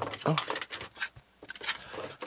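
Faint crinkles and light taps of foil booster packs being handled and lifted out of a clear plastic tray, a few scattered clicks.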